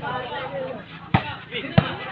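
A volleyball being struck twice during a rally, two sharp slaps about two-thirds of a second apart, over spectators' chatter.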